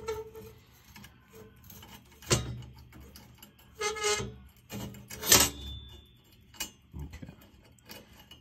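Fingers fumbling a small nut onto the threaded fitting of a gas boiler's flame sensor rod: a few scattered small clicks and knocks of metal parts being handled, the loudest about five seconds in.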